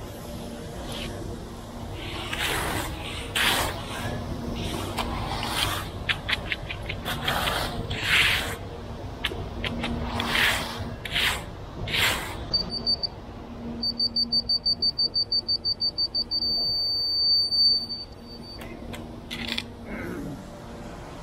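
A hand tool scrapes through wet concrete in repeated strokes along the form edge. Past the middle, a laser-level receiver gives a quick high beeping for a few seconds, then a steady tone that ends after about two seconds: fast beeps mean the rod is off grade, the solid tone means it is on grade.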